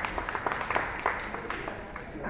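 A small audience clapping in a quick, dense patter that thins out near the end.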